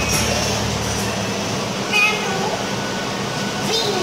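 Café room noise with a few short, indistinct vocal sounds, one about two seconds in and another near the end.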